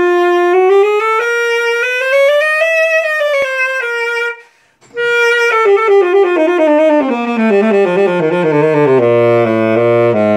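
P. Mauriat System 76 2nd Edition tenor saxophone being play-tested after a service. A run of notes climbs and falls back, there is a brief pause for breath about four seconds in, and then a stepwise run descends into the low register and ends on a held low note.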